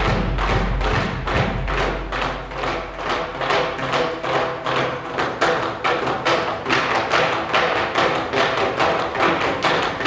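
Percussion ensemble playing: a steady, rapid stream of sharp struck notes over sustained pitched tones. The deep low drum thumps drop out about a second in.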